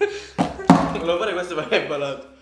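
People's voices talking, with two sharp knocks a moment apart about half a second in.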